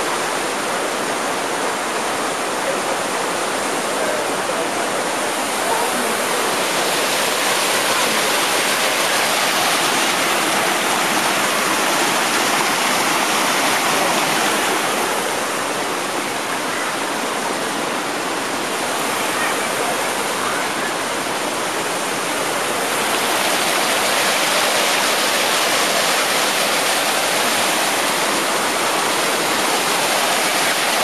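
Rushing water of the Mekong River's rapids and cascades: a steady, loud wash of falling and churning water, its hiss easing a little midway before returning.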